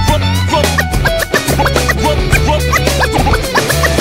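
Hip-hop instrumental with DJ turntable scratching: many short rising and falling scratch sweeps over a heavy, steady bassline and beat, with no rapping.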